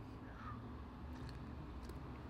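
A quiet sip of coffee from a mug, one short faint sound about half a second in, over a low steady room hum.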